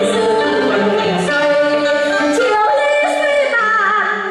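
A woman singing a cải lương (Vietnamese reformed opera) vocal line, the pitch sliding and wavering, over steady instrumental accompaniment.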